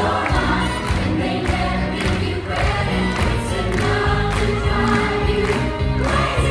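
A musical theatre cast singing together in full chorus over the show's music with a steady beat, heard live in the theatre from the audience.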